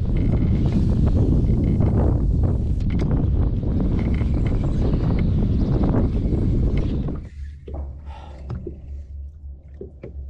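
Wind buffeting the microphone of a camera mounted on the kayak: a loud, low rumble for about seven seconds that then drops to a softer rumble with a few small clicks.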